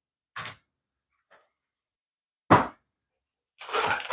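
Packaging being handled: a faint tap, then a louder single knock about two and a half seconds in, then plastic packaging starting to crinkle near the end as a bag of accessories is picked up.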